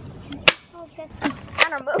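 Two sharp clicks from an airsoft gun, one about half a second in and another a second later, with faint voices between them.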